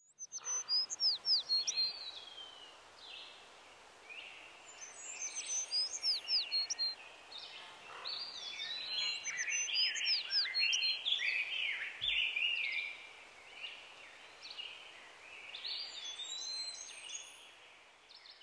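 Several songbirds singing at once, a woodland chorus of overlapping whistled phrases and quick downward-sweeping notes, busiest in the middle and thinning out towards the end over a faint steady hiss.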